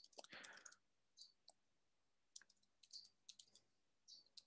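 Faint, irregular clicking of a computer keyboard as a short sentence is typed, with a pause about halfway.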